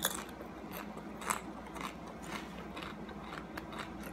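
Homemade potato chip being chewed close to the microphone, with faint crunches coming irregularly, about twice a second.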